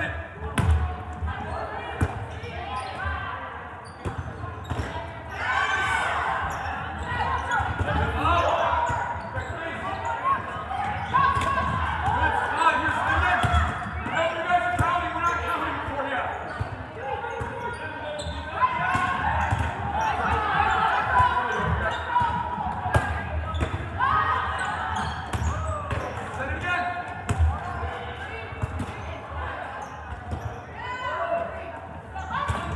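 Volleyballs being struck and bouncing on a hardwood gym floor, many sharp smacks scattered throughout, over the overlapping calls and chatter of players and people at the sidelines, all ringing in a large gym hall.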